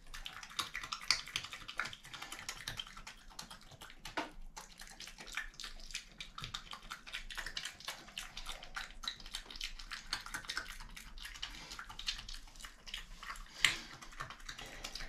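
A European badger eating food off a tiled floor close to the microphone: a steady run of wet smacking and crunching clicks as it chews, with a few sharper clicks.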